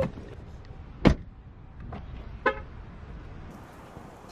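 A car door shuts with a solid thump about a second in, then a car horn gives one short chirp about two and a half seconds in, over a low steady outdoor background.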